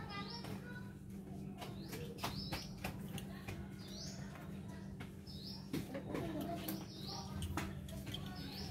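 Small birds chirping outdoors: short rising chirps, often in pairs, repeating about once a second, with scattered faint clicks.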